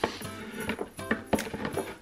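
Background music with steady tones. Over it come several short light clicks and taps of a cardboard gift box being handled and opened.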